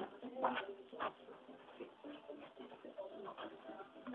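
Faint, indistinct voices with a couple of short knocks about half a second and one second in.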